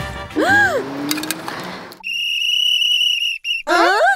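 Background music with a cartoon sound effect that swoops up and back down about half a second in. Then comes one long, steady blast on a plastic lifeguard whistle from about two seconds in, broken briefly near the end, and a short rising sound just after it.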